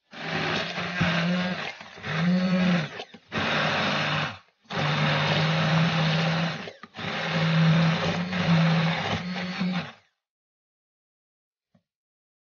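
Immersion (stick) blender running in about five bursts of one to three seconds, puréeing garlic with broth in a beaker; the motor's pitch sags briefly in the second burst, and it stops about ten seconds in.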